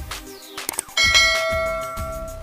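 Subscribe-button animation sound effect: a short click, then about a second in a bell ding whose ringing tones hang on and slowly fade, over background music with a steady beat.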